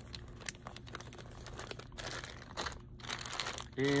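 Crinkling and rustling of a clear plastic zip-top bulk bag of soft-plastic jig trailers being handled, a scatter of irregular crackles, over a low steady hum.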